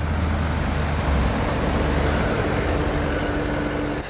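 John Deere 331G compact track loader's diesel engine running steadily, a low even rumble.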